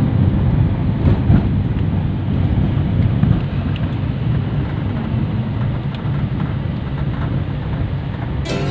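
Steady low rumble of wind and road noise from a moving vehicle, buffeting the phone's microphone.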